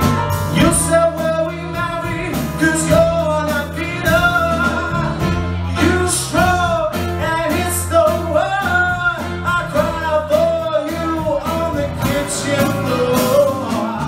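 Live band playing with a male singer: a sung line that holds and bends over electric bass, drums with regular cymbal hits, electric guitar and keyboard.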